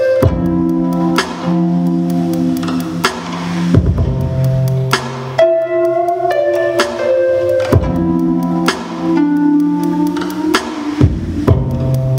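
Instrumental music with a steady beat: held chords over a bass line, the chords changing about every four seconds.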